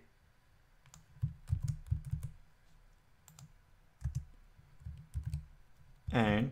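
Computer keyboard being typed on, in two short runs of keystrokes, about a second in and again about four seconds in.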